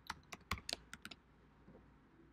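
Fast typing on a computer keyboard: about seven sharp keystrokes in just over a second, then it stops.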